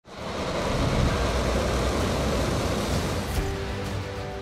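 Rocket engines at liftoff: a loud, dense rush of noise, heaviest in the low end. About three and a half seconds in it thins out as steady music tones come in.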